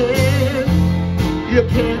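Live country-style band music with guitar and held bass notes, an instrumental stretch of a musical-theatre song with no words sung.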